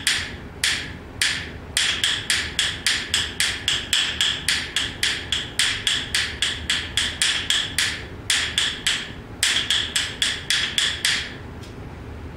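Wooden bones of yellow pine clacking in a quick, steady rhythm of about four clicks a second, mixing the single, double and triple strokes of basic bones playing, with a few short breaks. The playing stops near the end.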